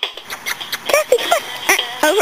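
Shetland sheepdog giving several short, high whines that bend up and down, starting about a second in, over light handling noise.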